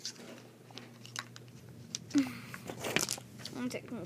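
Scattered clicks and rustling of plastic toy stage pieces being handled and fitted together, with the loudest clicks a little after two seconds and about three seconds in.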